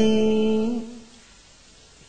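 A chanting voice holds one steady hummed note at the end of a recited verse line, which bends slightly and fades out about a second in, leaving a low quiet stretch.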